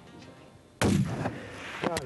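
A single rifle shot about a second in, with a short echo trailing off after it. A man's voice starts just before the end.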